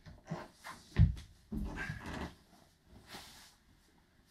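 A judoka's body rolling over a wooden floor: soft knocks and one heavy thud about a second in, then an effortful breath as he comes up to sitting.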